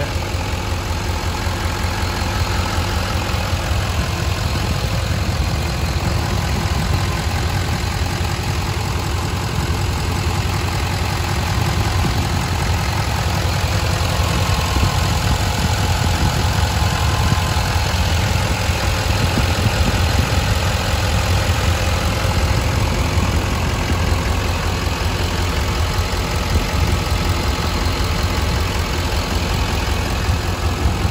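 6.6-litre LML Duramax turbo-diesel V8, emissions-deleted and fitted with a cold air intake, idling steadily, heard close up in the open engine bay.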